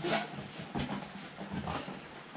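Faint, irregular rustling and knocking of cardboard packaging being handled as a boxed food dehydrator is unpacked.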